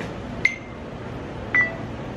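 Two finger snaps about a second apart, each a sharp click with a brief ringing tone, over steady room noise.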